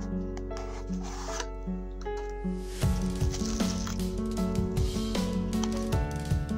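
Cardboard knife box being opened and handled, with paper and card rubbing and sliding in two spells, about a second in and again from about three seconds in, over steady background music.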